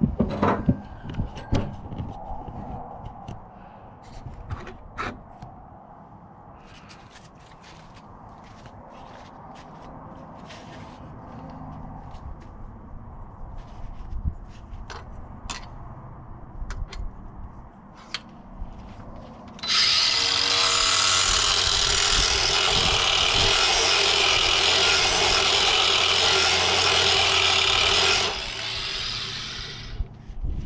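Clicks and knocks of a mower-blade sharpener jig being handled and set, then about twenty seconds in a cordless drill spins the sharpener's grinding stone against a steel mower blade: a loud, steady grinding hiss for about eight seconds that cuts out near the end.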